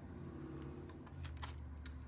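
Faint, light clicks and taps of tarot cards being handled and laid down on a table, a few of them close together about a second in.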